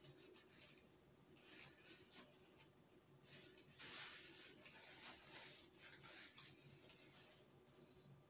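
Faint close-miked chewing with the mouth closed: soft, irregular crackly mouth sounds, loudest around four seconds in.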